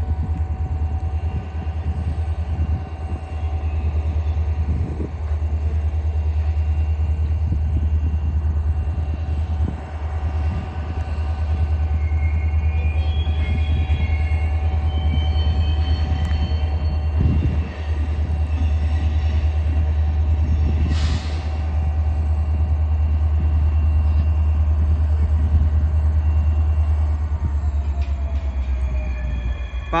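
Union Pacific EMD SD40N locomotives (two-stroke V16 diesels) running at low throttle as they slowly shove cars over the hump, a steady low drone that eases off near the end. Faint high wheel squeals from the cars come in around the middle.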